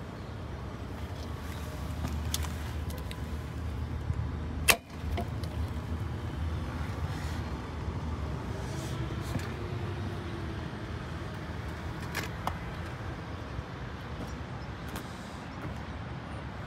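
Land Rover Defender 110's engine idling, heard at the exhaust tailpipe as a steady low rumble. A single sharp click sounds about five seconds in.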